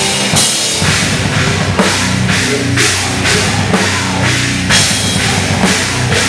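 Hardcore band playing live: distorted electric guitar and bass over a pounding drum kit, with cymbal crashes about twice a second.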